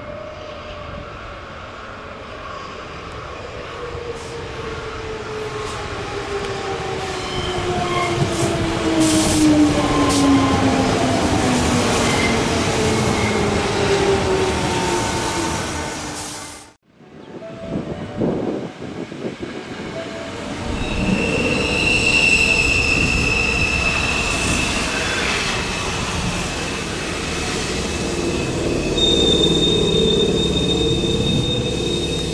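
Sanyo Electric Railway electric trains running into a station. For the first half, the traction motor whine slides steadily down in pitch as the train slows. After an abrupt cut, a second train's wheels and brakes give steady high squeals, the highest starting near the end as it comes to a stop.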